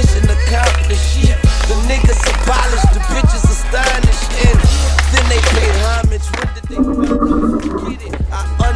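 Hip hop backing track with a heavy bass line, mixed with skateboard sounds: sharp clacks of the board popping and landing over rolling wheels. The bass drops out for the last couple of seconds.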